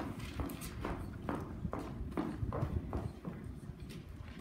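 A clip-clop hoofbeat effect: a run of short, hollow knocks, about three a second, imitating a horse's trot.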